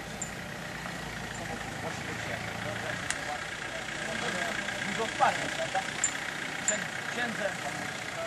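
Outdoor ambience: indistinct distant voices over the steady low hum of an idling vehicle engine, which fades after about two seconds, with a few faint clicks.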